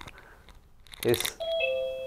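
A two-note chime: a higher tone, then a lower one a moment later, both clean and held, a ding-dong.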